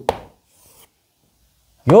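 Chalk on a blackboard: a tap, then a short, faint scraping stroke, within the first second.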